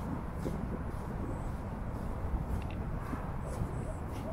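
Footsteps on sandy ground, about one step a second, over a steady low rumble of outdoor background noise.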